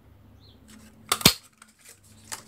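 A handheld butterfly craft punch pressed through cardstock, a sharp snap a little over a second in, with a little paper rustle just before it.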